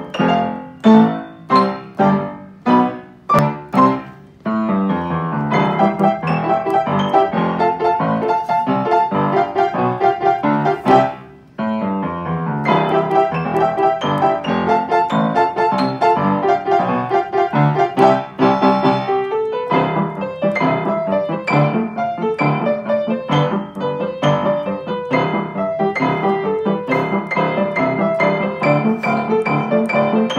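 Upright piano played by several players at once in a calypso rhumba. It opens with separate chords struck about twice a second, then turns to busier playing about four seconds in, with a brief break just before the middle.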